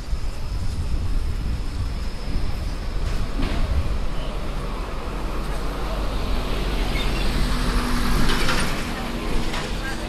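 Street traffic with a box truck driving past: its engine and tyre noise build to their loudest about eight seconds in, over voices of people nearby.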